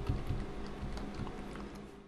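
A few faint computer mouse or keyboard clicks over a steady low hum, as a shape is nudged across the screen in a drawing program.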